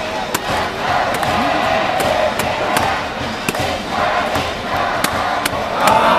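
Baseball stadium crowd: spectators chanting and cheering along with band music, steady and loud, with scattered sharp clicks through it.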